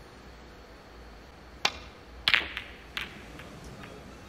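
Snooker break-off: the cue tip strikes the cue ball with a sharp click, and about half a second later the cue ball hits the pack of reds in a loud burst of ball-on-ball clicks. A few scattered, fainter clicks follow as the reds spread.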